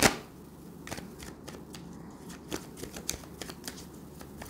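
A deck of tarot cards being shuffled by hand: a quick, irregular run of soft card flicks and slaps.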